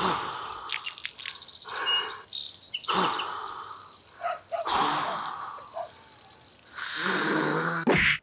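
A man blowing air into a large inflatable pool float by mouth, in several long breaths, with birds chirping in the background.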